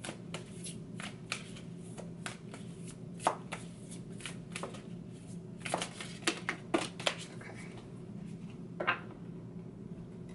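A deck of oracle cards being shuffled by hand, making irregular soft taps and flicks, with a few cards slipping out of the deck and dropping onto the table.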